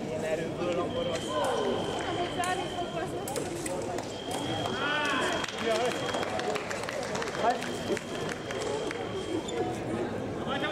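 Fencing hall ambience: indistinct voices echoing around the hall, with a high steady electronic tone that sounds for a second or two at a time, four times, and a burst of short squeaks about five seconds in.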